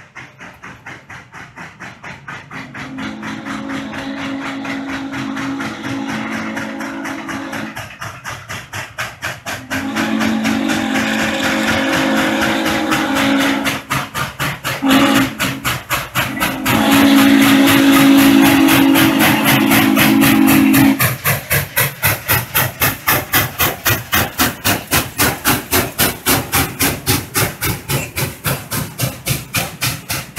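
Norfolk & Western 611 steam locomotive sounding its low-pitched hooter whistle in the grade-crossing signal: long, long, short, long, with the last blast ending about two-thirds of the way through. Under it a grade-crossing bell clangs steadily, about two and a half strikes a second.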